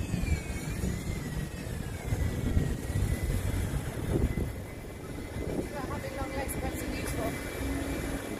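Street traffic noise: a low, uneven engine rumble with a thin high whine that falls in pitch over the first couple of seconds and then holds steady.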